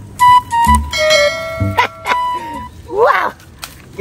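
Comedy sound-effect stinger: a string of short, held synthetic tones and boings over low thuds, then a brief pitch-bending vocal sound about three seconds in.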